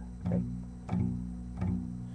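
Guitar being plucked, low notes ringing on, with a new note or chord about every two-thirds of a second.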